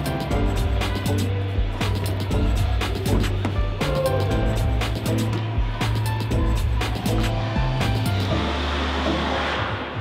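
Background music with a steady beat over a held bass line. Near the end the bass drops away under a swelling hiss.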